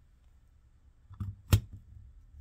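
A few faint ticks, then a single sharp click about one and a half seconds in, as the plastic trigger head of a handheld clay extruder is set down onto the top of its metal barrel.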